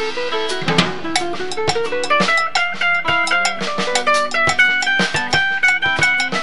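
A small band playing an instrumental passage: electric guitar picking quick runs of short notes over a steady drum-kit beat.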